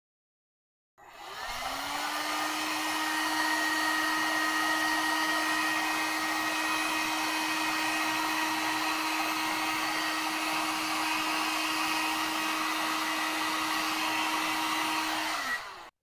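Handheld electric heat gun switched on about a second in, its fan motor rising to a steady hum over an even rush of blown air, then switched off near the end with the pitch dropping as it spins down.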